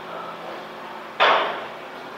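A loose corrugated metal roof sheet banging once in the wind, a sudden clang a little past halfway that rings and fades over about half a second.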